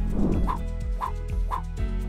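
Background music under an edit transition: a short whoosh at the start, then three short, chirpy sound-effect blips about half a second apart.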